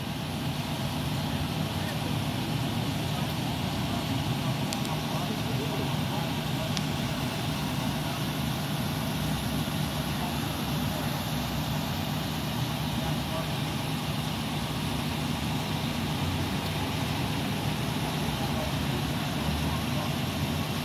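Steady low hum of an idling vehicle engine, unchanging throughout.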